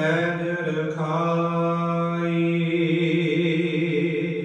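Sikh shabad kirtan: a male voice drawing out long sustained sung notes between the words of the hymn, changing pitch about a second in.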